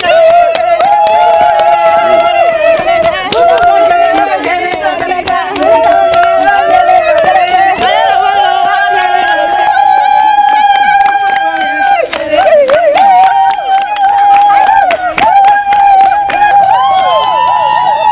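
Several women singing together with hand claps keeping time, their voices holding long notes.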